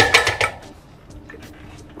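A sharp metallic clank with a brief ringing as the steel pulley carriage of a cable machine is moved along its upright and locked in place with its pin, followed by quiet.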